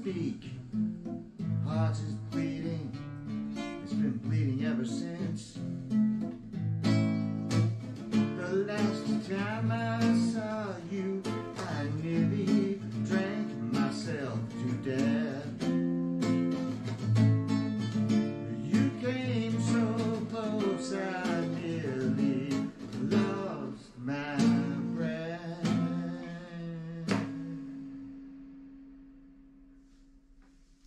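Nylon-string acoustic guitar played solo, a steady flow of plucked notes and chords; near the end a last chord is left to ring and fades out.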